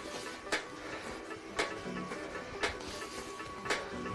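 Ski simulator workout with ski poles: four sharp knocks about a second apart, each marking one side-to-side turn and pole plant, over quiet background music.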